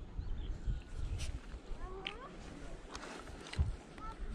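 A short animal call about two seconds in, a few quick gliding notes, over a low rumble.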